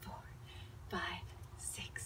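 A woman's quiet, breathy, half-whispered voice counting out the beats of an exercise between louder counts.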